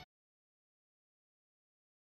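Silence: the electronic dance backing music cuts off at the very start, and nothing follows.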